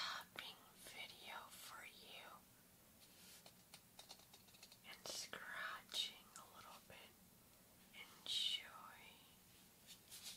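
A woman whispering softly and close to a binaural microphone, with a few short, faint clicks between phrases.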